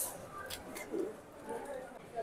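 Faint supermarket background: soft murmur of distant voices with a few light clicks.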